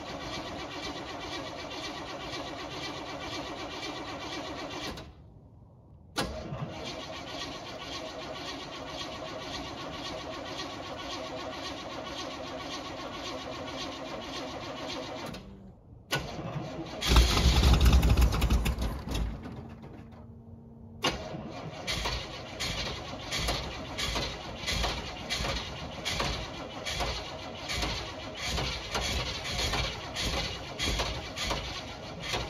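Old motorhome's engine being cranked by the starter on a cold start, in long spells with short pauses between. About seventeen seconds in it catches with a loud burst, falters, then keeps going with an uneven, pulsing run: a hard cold start that takes a long time to fire.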